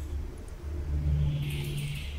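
Low steady background hum and rumble, with a higher hum and a hiss joining about a second in.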